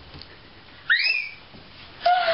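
A single short, high-pitched squeal about a second in, rising quickly in pitch and then levelling off, lasting about half a second.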